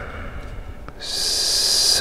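A person drawing a breath, a steady hiss lasting about a second that starts about a second in, with a faint tick just before it.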